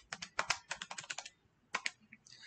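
Calculator keys being tapped: a quick run of about a dozen clicks over the first second or so, a short pause, then two more presses near the end.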